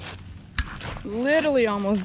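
A man's footsteps rustle in dry leaves, with a sharp knock about half a second in as the camera is handled. From about a second in he makes a drawn-out wordless vocal sound whose pitch rises and then falls.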